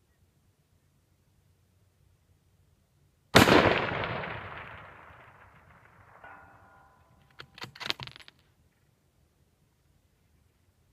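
A single shot from a .308 bolt-action rifle, followed by a long rolling echo that fades over about three seconds. Just under three seconds after the shot, a faint ring comes back, which fits the bullet striking a steel target at 700 yards. A few sharp clacks follow, as from the bolt being worked.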